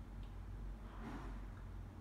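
Quiet room tone: a steady low hum, with one faint soft rustle about a second in.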